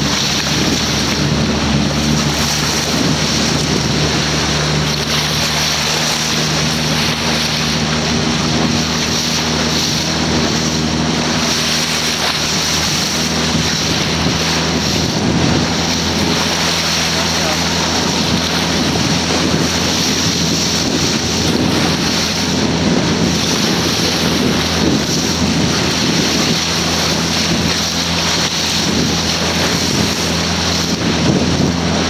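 Boat motor running steadily under way, with water rushing past the hull and wind on the microphone. The motor's hum shifts slightly about halfway through.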